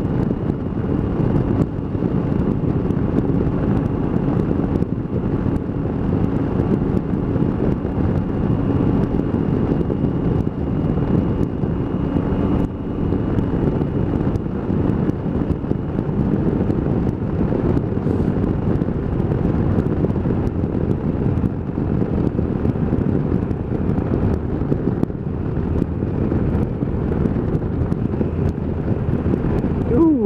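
Triumph motorcycle engine running steadily at cruising speed, mixed with wind rushing over the microphone.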